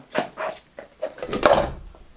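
Plastic camping bowls being nested and handled on a table: a few light clacks and rubs, the loudest about one and a half seconds in.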